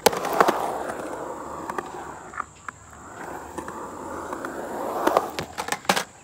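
Skateboard rolling on concrete ramps: a sharp clack at the start, then wheel roar that fades off and swells again as the board comes back, with a run of clacks from the board near the end.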